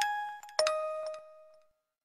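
Bell-like chime notes from a song's intro, the last of a falling sequence: one struck at the start and a lower one about half a second in, each ringing out and fading away.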